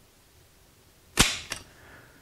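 Kalashnikov rifle dry-firing as its trigger is slowly pulled by a trigger-pull gauge. The hammer falls with one sharp, loud metallic snap a little past halfway, followed by a lighter click. The trigger breaks at about 4.16 kg.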